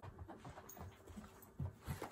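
A small dog panting faintly, close by.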